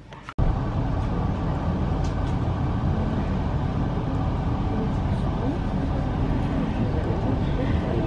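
Steady running rumble inside a passenger train carriage moving at speed. It starts suddenly about a third of a second in.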